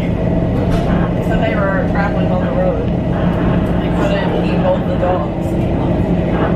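Steady running rumble with a low hum inside the car of a moving Long Island Rail Road commuter train, under indistinct passenger conversation.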